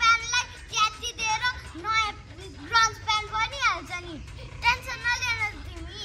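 Young children's high-pitched voices talking in short, quick phrases.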